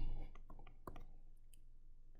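Faint, scattered clicks of a stylus tapping on a tablet while letters are hand-written, over a low steady hum.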